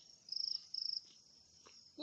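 Cricket chirping: two short, high-pitched trills in quick succession about a third of a second in, over a faint steady insect hum.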